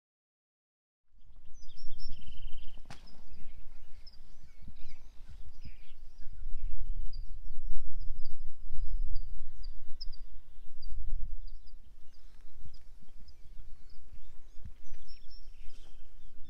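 Small birds chirping repeatedly, with a short trill about two seconds in, over a low, gusting rumble of wind on the microphone, starting about a second in.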